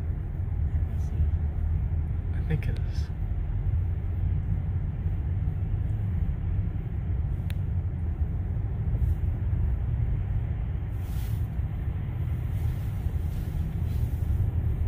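Steady low rumble of road and tyre noise inside a Tesla's cabin as it drives slowly through a road tunnel in traffic, with no engine sound from the electric drive.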